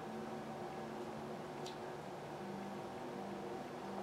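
Quiet room tone: a steady low hum with one faint, short tick a little under two seconds in.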